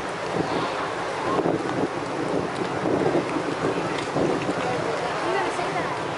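Outdoor street ambience: wind rushing on the microphone over the chatter of a crowd of passers-by, with scattered voices.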